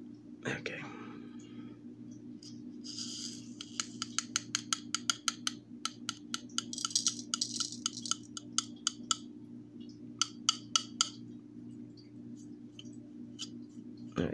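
Small chunky pieces of gold tinkling and sliding as they are tipped from one metal weighing tray into another on a digital scale: a quick run of small clicks with short rattling hisses, starting about three seconds in and stopping about eleven seconds in. A low steady hum runs underneath.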